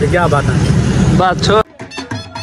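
A man speaking over a steady low background rumble. About one and a half seconds in, this cuts off suddenly and gives way to music with a singing voice.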